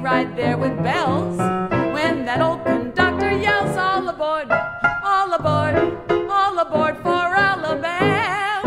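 A woman singing a ragtime song with vibrato to a live piano accompaniment, with a few quick upward slides in the voice.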